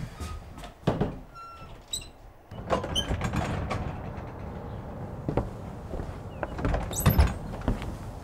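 A wooden front door being opened, with a sharp latch click about a second in, then a loud thump near the end as a door shuts.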